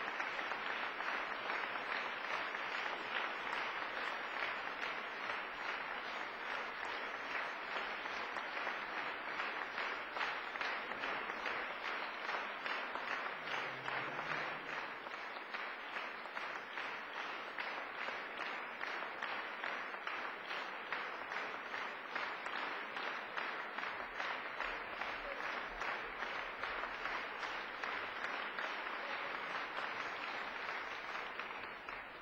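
Concert audience applauding: many hands clapping in a steady, dense patter that neither builds nor dies away.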